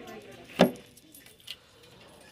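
A sharp clack about half a second in, then a smaller tick about a second later, as a cardboard eyeshadow palette is pushed back into a store display rack.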